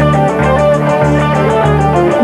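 Pop-rock band playing an instrumental passage with a steady beat: drums, a pulsing bass line and electric guitar, with no singing.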